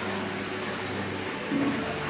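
Steady background noise with a faint murmur of voices, and a brief high falling whistle about a second in.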